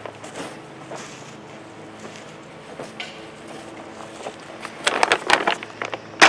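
Potting soil and fertilizer being stirred by a gloved hand in a fabric grow bag: a soft rustling with scattered small crunches, then a quick run of sharper crackly scrapes about five seconds in.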